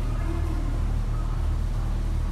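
Steady low machine hum that holds an even level throughout, with no distinct event.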